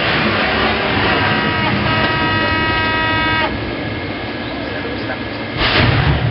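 Steady noise aboard a warship at sea, with a horn-like alarm tone that sounds about a second in and cuts off abruptly some two and a half seconds later. Near the end comes a sudden loud rush of noise with a low rumble.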